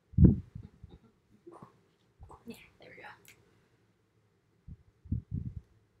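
A single short, low thump just after the start, the loudest sound here, like something knocked or set down close to the microphone, followed by quiet muttered words.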